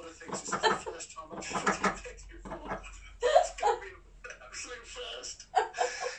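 Indistinct speech: voices talking with no clear words.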